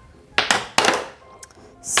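A ball knocking against a portable Skee-Ball ramp: two sharp knocks about half a second apart, then a light click, over background music.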